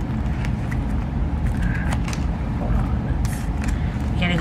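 Photocards and clear plastic binder sleeves being handled, with scattered light clicks and rustles as a page is turned near the end. Under it runs a steady low rumble that is louder than the handling.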